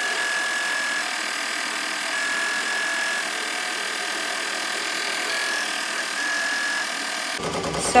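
Ricoma MT-1501 15-needle embroidery machine stitching out a design at a steady speed, with a high whine that comes and goes. The sound cuts off suddenly near the end.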